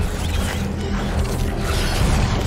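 The episode's soundtrack playing through the reaction: a dense, steady wash of dark, mechanical-sounding sound effects over a low held tone of score, with no speech.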